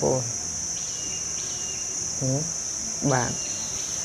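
Steady, high-pitched drone of an insect chorus from the surrounding trees, unbroken throughout, with a man's voice speaking two brief words near the end.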